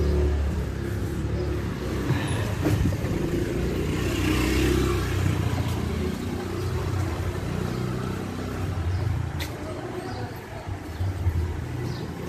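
A motor scooter's engine running close by, loudest in the first half, with the low hum of its engine throughout.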